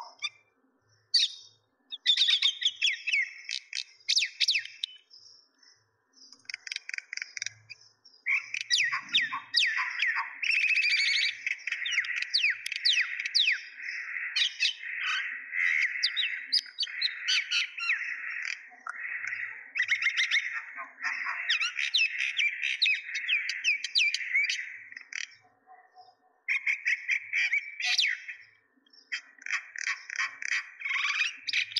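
Small birds chirping and twittering, many quick calls overlapping in long dense stretches with a few brief pauses.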